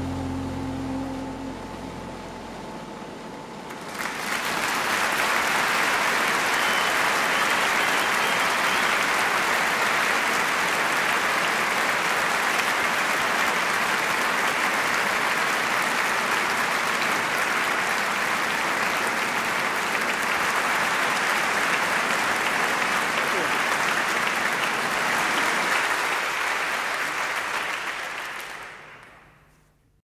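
A crowd applauding, starting about four seconds in and holding steady, then fading out in the last few seconds. Before that, the tail of a marimba-like music track dies away.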